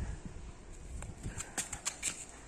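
Faint, irregular light knocks, with a few sharper clicks in the second second, over low background noise.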